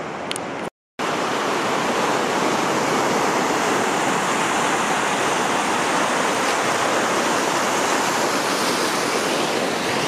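Small waves breaking and washing in over the sand in the shallows: a steady rush of surf, which drops out completely for a moment just before a second in and then comes back louder.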